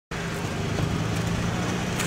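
A car engine idling steadily, a low even hum.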